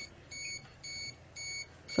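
A handheld radiation meter's alarm beeping: short, high-pitched electronic beeps repeating evenly, about two a second. The alarm is set off by dose rates of roughly 0.6 to over 1 millisievert per hour from contaminated clothing.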